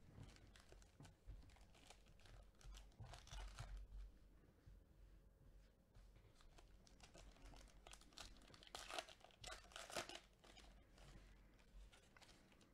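Faint crinkling and tearing of a trading-card pack's wrapper as it is ripped open and the cards are drawn out, in irregular crackly bursts that are busiest about three seconds in and again near nine to ten seconds.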